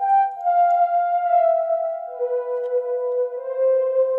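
Korg Prologue analog synth lead one-shot, the 'Digikordion' preset, playing a slow melody of a few long, smooth held notes, stepping down to a lower note about halfway through.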